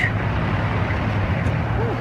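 Street traffic noise with a steady low engine hum.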